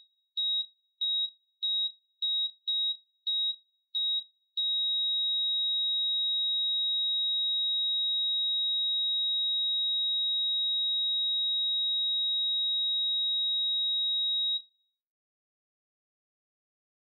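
Heart-monitor sound effect: a single high beep repeats about every 0.6 seconds, eight times, then becomes one long unbroken tone of about ten seconds before cutting off. The beeps turning into a flatline signal that the heart has stopped.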